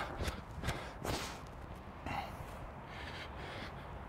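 A man breathing hard after bowling a fast delivery, with soft footsteps as he walks on artificial turf. A few breaths and steps come in the first second, then it settles quieter.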